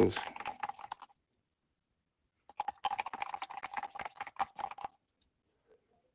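Rapid clicking and tapping of a wooden popsicle stick stirring acrylic paint with pouring medium in a cup. It comes in two stretches, a short one at the start and a longer one from about two and a half seconds in, with a silent gap between.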